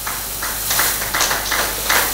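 Audience applauding in a hall, a dense patter of many hands clapping that swells about half a second in.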